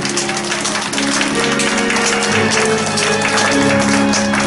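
A congregation applauding over background music of steady held chords, the chord changing about halfway through.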